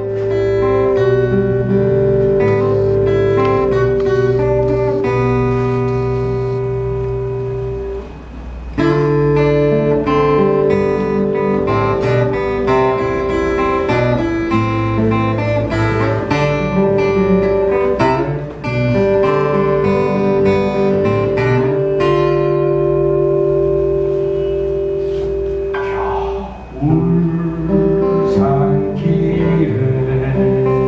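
A song performed live on acoustic guitars: strummed chords under long, steady held notes, with brief breaks between phrases.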